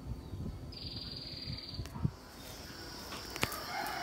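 A rooster crowing, one call lasting about a second, followed by two sharp clicks.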